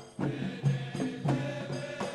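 Traditional music: voices chanting together over a steady beat of hand drums.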